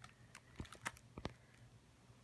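A handful of faint, sharp clicks and taps in the first second or so, from a hardcover picture book being handled.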